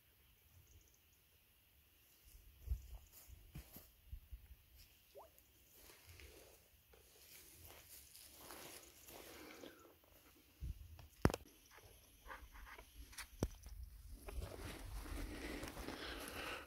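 Faint, scattered rustling and knocking sounds of someone moving and handling things, with a low rumble at times and two sharp clicks in the last third.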